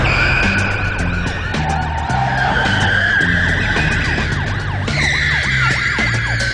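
Car tyres squealing in long, repeated squeals as a car is driven hard through tight turns, over a dramatic music score with a stepping bass line.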